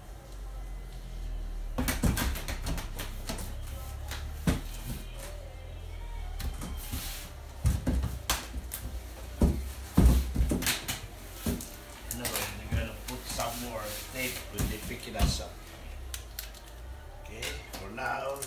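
Cardboard box being handled: a string of knocks, taps and rustles as its flaps are worked and pressed, the loudest knock about ten seconds in.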